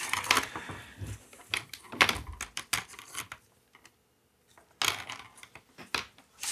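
Plastic tubes clicking and knocking against each other and the workbench as they are handled on their cord, in irregular taps with a short quiet gap a little past the middle.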